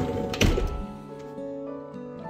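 Manual rear sliding door of a Toyota Voxy minivan, slid open by hand and hitting its open stop with a single heavy thunk about half a second in, over background music.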